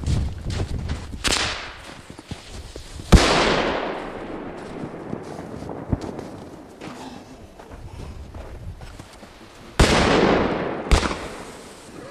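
Firecrackers going off: a string of sharp bangs, the loudest about three seconds in and two more close together near the end, each followed by a fading echo, with crackling in between.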